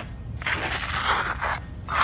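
A handheld texturing tool scraping across a wet concrete overlay, gritty strokes of the trowel through fresh cement. One long stroke starts about half a second in, and another begins right at the end.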